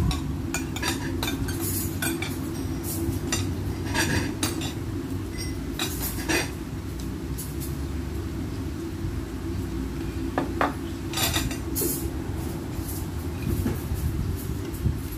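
Spoons and forks clinking and scraping against ceramic bowls and plates as two people eat, in short irregular clinks, over a steady low background hum.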